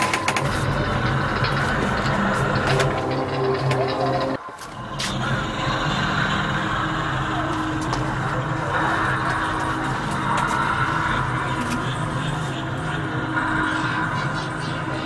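A steady low droning hum holding several tones, with muffled voices behind it. It drops out briefly about four and a half seconds in.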